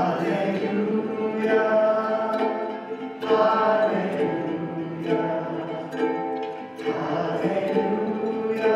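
A man singing while strumming a ukulele, a new sung phrase starting every three to four seconds.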